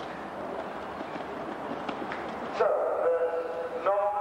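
Even outdoor background hiss with a few faint clicks, then a man's voice starts about two and a half seconds in and is clearly louder.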